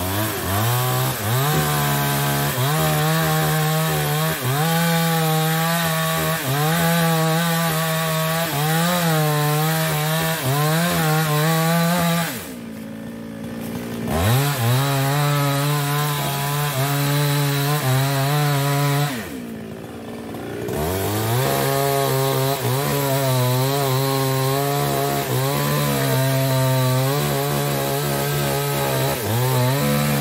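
Small two-stroke New West 628 chainsaw at full throttle cutting into a sengon trunk, its engine pitch wavering as the chain bites into the wood. About twelve seconds in, and again around nineteen seconds, the throttle is let off for a second or two, then opened back up to keep cutting.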